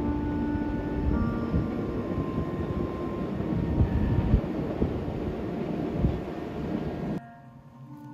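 Distant freight train running along an elevated rail viaduct: a steady low rumble that cuts off suddenly about seven seconds in. Faint background music plays underneath.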